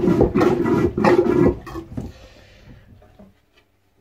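Hand-pumped marine toilet (boat head) being flushed on the dry-bowl setting: a quick run of plunger strokes emptying the bowl, loud for about a second and a half, then fading away.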